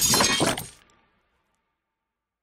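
End-card sound effect: a crash-like, shattering noise that dies away within the first second, then dead digital silence.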